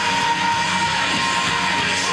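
Loud background rock music with guitar, playing steadily.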